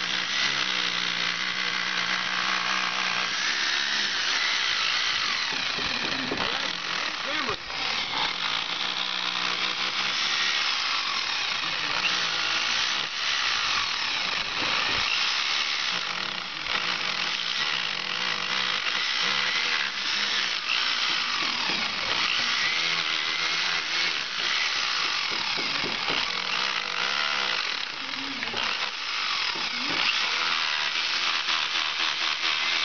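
Electric rotary hammer with its bit driven into a chimney's old brick and mortar, chipping out deteriorated masonry. It runs steadily, with a few brief letups.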